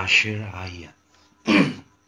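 A man clears his throat once, sharply, about one and a half seconds in, just after a short stretch of prayer speech.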